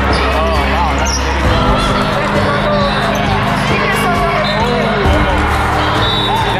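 Busy indoor volleyball hall: sneakers squeaking on the sport court and ball hits over the chatter of players and spectators, echoing in the large hall, with a steady low hum or music underneath.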